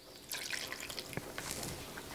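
Cashew milk poured in a thin stream from a jug into a stainless steel mixing bowl, starting about a third of a second in, while a wire whisk stirs the thick flour batter.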